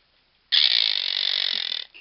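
Quaker parrot (monk parakeet) giving a single harsh, raspy call that starts about half a second in and lasts just over a second before breaking off.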